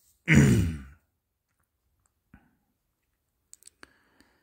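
A voiced sigh, under a second long and falling in pitch, followed by near quiet with a few faint clicks near the end.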